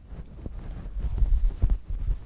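Low rumble and soft thumps of a person moving about: getting up from a kneel on a floor mat and stepping across it, with a sharper knock a little past halfway.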